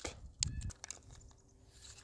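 Faint clicks and crackles of broken 3D-printed plastic plane parts and wires being handled, mostly in the first second.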